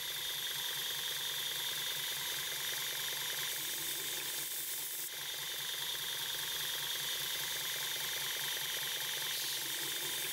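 Knife-making belt grinder running steadily with a flexible P-Flex abrasive belt: a constant hiss with a high whine, the blade mostly held clear of the belt.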